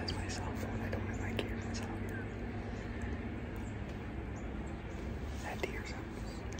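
A man whispering, with a steady low hum underneath that fades about two-thirds of the way through.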